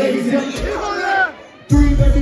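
Live hip-hop concert: shouting voices from the crowd and stage while the beat is cut back. After a brief lull the loud, bass-heavy beat drops back in near the end.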